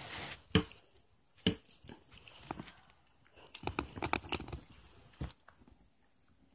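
Rustling and shuffling close to the microphone, broken by three sharp clicks or taps: one about half a second in, one about a second and a half in, and one near the end.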